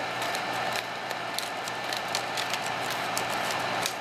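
Steady whir of the Elmo 35-FT(A) sound filmstrip projector's cooling fan, with faint scattered ticks as the 35mm filmstrip is slid out of its slot by hand.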